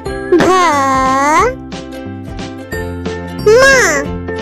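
Children's background music with a steady beat and bright tinkling tones. A high voice calls out two Hindi letter names, 'bha' and 'ma', each as one long syllable with a gliding pitch: the first about half a second in, the second near the end.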